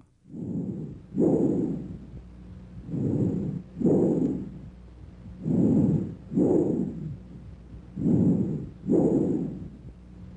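Bronchial breath sounds as heard through a stethoscope, the normal finding over the manubrium. Four breaths, each a shorter, quieter inspiratory sound, a brief gap, then a louder, longer expiratory sound.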